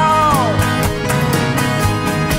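A live folk-pop band plays. A male singer's held note slides down and fades in the first half-second. Acoustic guitars, accordion and bass then carry on with a steady beat.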